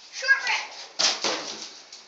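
A child's short wordless vocal sound, then a sudden noisy sound about a second in that fades away.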